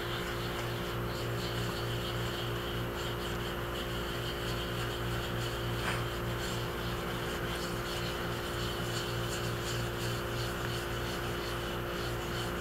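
Steady electrical hum, with faint rubbing of a wet scrubber pad over the surface of a soft-fired porcelain greenware doll head.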